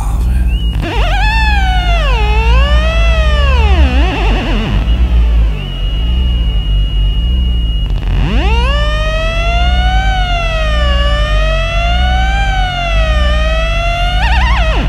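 Experimental electroacoustic music: pitched electronic tones swoop up and down in pitch over a heavy, wavering low drone. Midway a single high tone holds steady, then a new tone rises and wavers slowly up and down in even zigzags.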